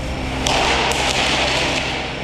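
Pyrotechnic decoy flare going off in a ground test chamber: a sharp crack about half a second in, then a loud hissing burn with a few more cracks.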